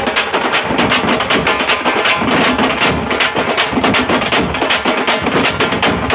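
A troupe of tamate frame drums beaten with sticks together with large bass drums, playing a loud, fast, dense beat without a break.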